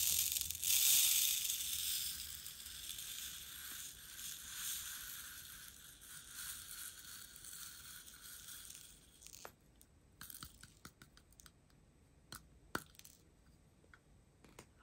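Hundreds of small square plastic diamond-painting drills pouring from a plastic container into a plastic tray: a continuous rattling stream, loudest in the first couple of seconds, thinning out and stopping about nine seconds in. A few separate clicks follow.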